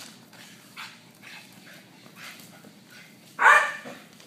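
A five-month-old German Shepherd puppy barking once, loud and short, about three and a half seconds in, after a few soft sounds.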